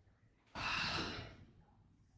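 A man's breathy sigh, one exhale lasting just under a second, starting about half a second in.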